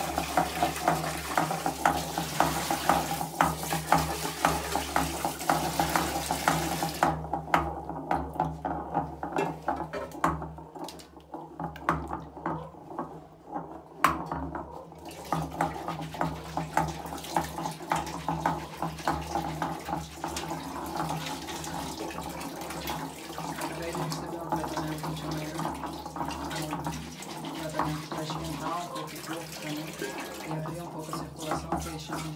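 Wooden pestle churning and grinding a wet, milky herbal mixture in a large ceramic mortar: repeated sloshing, scraping strokes, about two a second for the first several seconds, then softer. A steady low hum runs underneath.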